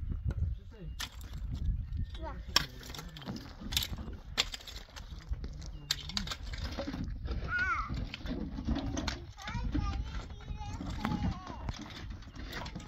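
A rake scraping and knocking through dry, stony soil, with several sharp knocks of the tines on stones. A young child's voice comes in at times, mostly in the second half.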